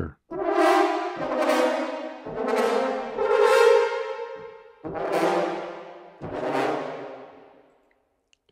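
Sampled French horn ensemble from Orchestral Tools' Metropolis Ark 3 playing atonal tone clusters: about five dissonant brass chords, each attacking and then fading away, the last dying out near the end.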